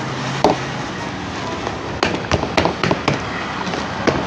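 Thin plastic nursery pot crackling and knocking as it is squeezed and worked to free a tightly packed root ball. A string of irregular sharp clicks starts about halfway through. The root ball is hard and stuck in clay-like soil.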